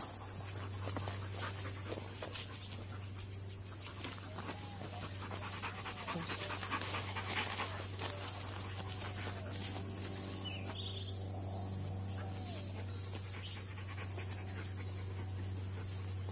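Dog panting in short rapid breaths, loudest about six to eight seconds in as it passes close by.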